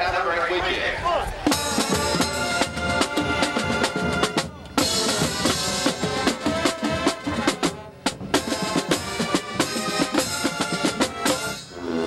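College marching band playing stand music, with drums and brass striking up about a second and a half in after a moment of talk. The music is driven by steady drum hits, with a couple of brief gaps.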